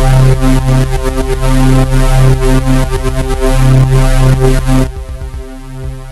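Electronic loop from the Drambo groovebox app: regular kick-drum hits under a sustained synth bass line, played loud and full with the sidechain compressor bypassed. Just under five seconds in the level drops and the synth pumps under the kicks as the compressor's sidechain ducking comes back in.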